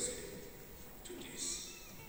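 A man's voice in a pause between phrases of a speech, with one short drawn-out syllable about a second in.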